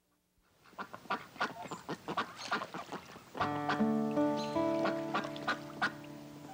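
A flock of geese and ducks calling: many short honks and quacks in quick succession, starting just under a second in. Soft music with long held notes comes in about halfway through and plays under the calls.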